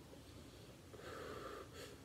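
A quiet room with one faint breath from a man smoking a cigar, lasting under a second and coming about a second in.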